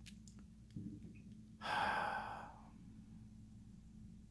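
A person sighing: one audible exhale about a second and a half in, lasting about a second and fading out, over a faint steady electrical hum and a few small clicks near the start.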